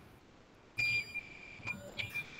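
Electronic beeper on electrical equipment, heard through a video-call microphone, sounding a high steady beep about a second in and shorter beeps near the end. By its owner's account it is a status beep meaning everything is okay.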